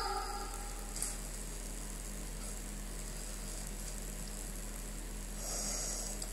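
Pause in a melodic Quran recitation through a microphone: the last note of a phrase dies away at the start, leaving a steady low electrical hum and faint hiss, with a soft breath-like hiss near the end as the reciter draws breath before the next phrase.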